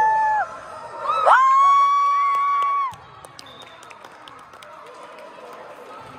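Two long, high-pitched cheering shouts of "woo". The first trails off about half a second in; the second is held from about one second to three seconds in. After that come faint gym hubbub and scattered sharp clicks.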